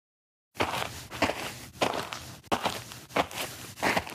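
Footsteps walking, a step about every two-thirds of a second, starting about half a second in.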